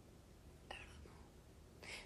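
Near silence: room tone, with one short, faint breathy sound about a third of the way in and a soft breath just before speech resumes.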